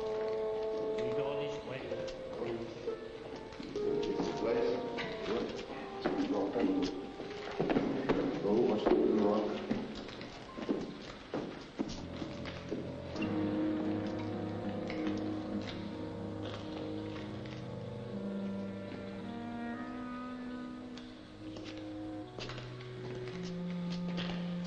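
Film score music of sustained, slowly shifting held notes. In the first half a louder, busier stretch adds sharp knocks and voices without clear words.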